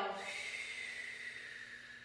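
A woman's long audible exhale, a steady breathy hiss that fades gradually toward the end.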